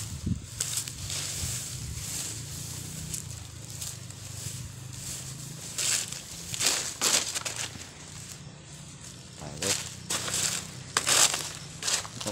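Dry leaves and plant matter rustling and crackling in short bursts, mostly about six to seven seconds in and again around ten to eleven seconds, over a steady low rumble.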